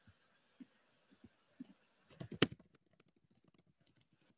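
Computer keyboard being typed on: faint, scattered keystroke clicks, with a quicker run of them a little after two seconds.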